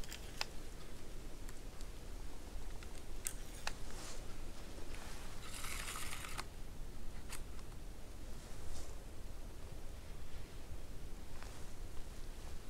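A few small sharp clicks and a brief rustle about halfway through, from a rifle being handled and camouflage clothing shifting, in otherwise quiet woods.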